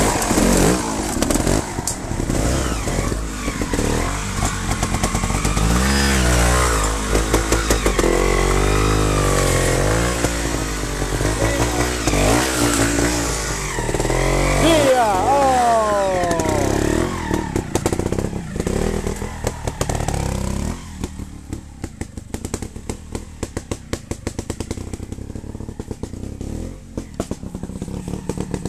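Trials motorcycle engines revving up and down in short bursts, their pitch rising and falling repeatedly as the bikes pick their way over rocks. About 21 seconds in, the engine sound drops to a quieter, lower running broken by frequent short knocks.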